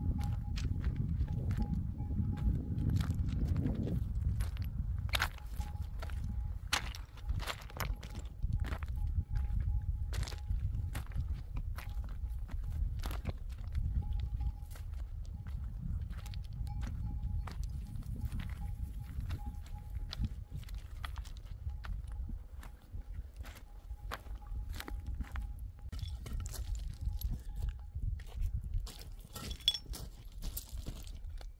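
Footsteps on a stony, gravelly mountain path, many irregular scuffs and clicks of shoes on loose rock, over a low rumble of wind on the microphone.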